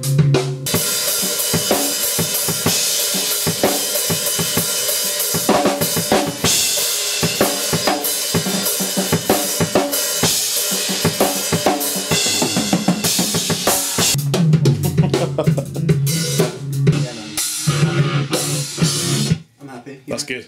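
Rock drum kit played hard and continuously: a dense run of snare, kick and cymbal hits, with a low sustained instrument part heard under it in places. The playing stops abruptly just before the end.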